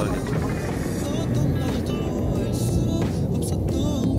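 An aircraft flying overhead: a loud, steady low roar under a man's talking and background music.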